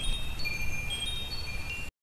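Chimes ringing: several high, clear tones sound one after another and overlap, then cut off suddenly just before the end.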